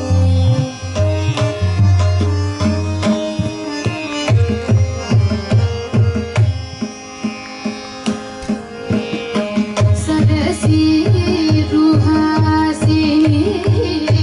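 Live Indian classical music: a violin plays a sustained melody over steady, rhythmic hand-drum strokes. A singer's voice joins in near the end.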